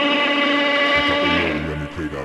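A drawn-out, steady monster roar sound effect that fades about a second and a half in as low bass notes of music come in.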